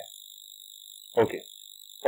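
A steady high-pitched electronic whine, with fainter higher tones above it, runs under the recording. A single short spoken word comes about a second in.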